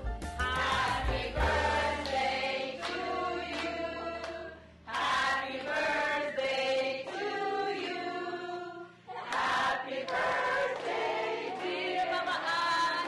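A group of voices singing together, choir-like, in sung phrases broken by short pauses about five and nine seconds in.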